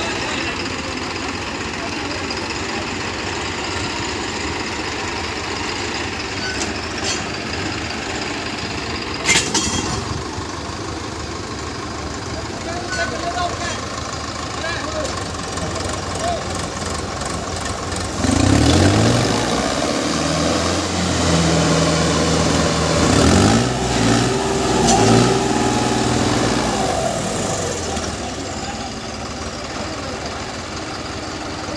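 Diesel farm tractor engines idling, with a sharp knock about a third of the way in. About two-thirds in, an engine is revved up: its pitch rises and it runs loud for several seconds, rising and falling, before easing back near the end.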